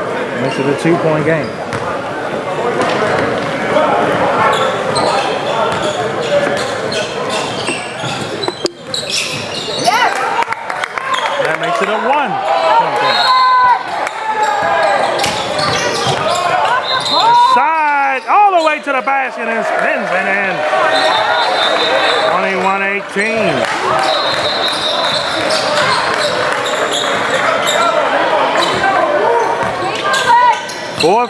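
Basketball being dribbled on a hardwood gym floor during live play, with shoes squeaking and players and spectators calling out, all echoing in the large gym.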